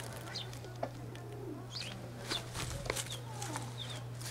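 Birds calling faintly: scattered short, high chirps and a few lower sliding calls, over a steady low hum.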